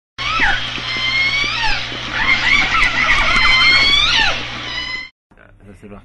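Intro sound effect of whistling calls gliding up and down in pitch over a steady low hum. It cuts off suddenly about five seconds in.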